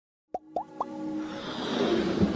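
Sound effects for an animated logo intro: three quick rising plops about a quarter second apart, followed by a whoosh that swells steadily louder.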